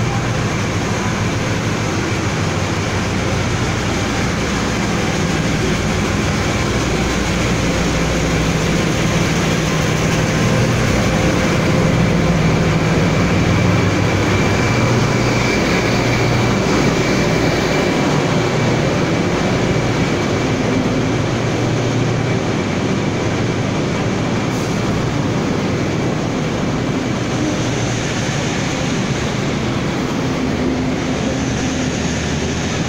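Taiwan Railways R136 diesel-electric locomotive running in along the platform with its engine droning, loudest a little before halfway as it passes. Its Chu-Kuang passenger coaches then roll by on the rails with a steady rumble. The sound rings off the walls of the enclosed underground platform.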